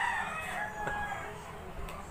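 A long drawn-out animal call, one held pitched note that falls slightly and fades out about a second and a half in.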